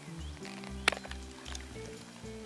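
Background music with a steady beat, and a single sharp snip about a second in as hand pruners close through a small tree branch.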